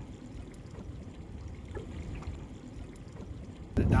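Faint, steady low rumble of water and wind around a small boat on open water, with faint lapping. Louder wind noise on the microphone cuts in suddenly near the end.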